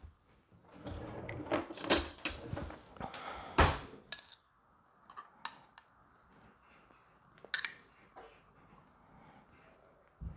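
Handling a glass jam jar and a metal spoon: clicks and small knocks as the jar is opened and the spoon clinks and scrapes inside the glass, the sharpest knock a little before 4 s in. Fainter scattered clicks follow as the jam is spooned into a stainless-steel saucepan.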